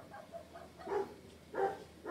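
A dog barking twice, faintly.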